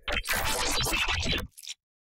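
Glitch sound-design sample playing back from FL Studio: a watery, splashy, stuttering texture built with Vocodex and pitch effects. It runs about a second and a half and cuts off suddenly, with one short blip after.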